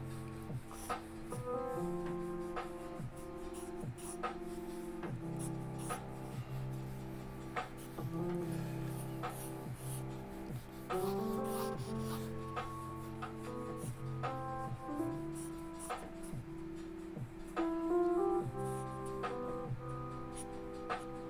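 Background music of held instrumental notes, with the scratch of pencil strokes on drawing paper as a figure is sketched.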